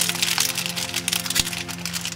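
Crackling and crinkling of a metallic gold tinsel ribbon being pulled and untied on a foil-wrapped gift box, as a dense run of sharp little ticks. Background music with long held notes plays underneath.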